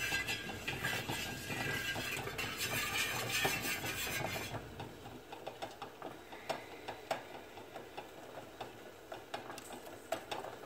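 A chopstick stirring candle wax in a metal pouring pitcher, scraping and ticking against the sides. The scraping is dense and steady for about the first four and a half seconds, then gives way to lighter scattered taps.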